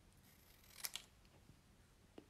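Small scissors cutting a strip of cardstock: one short snip a little under a second in, then near quiet.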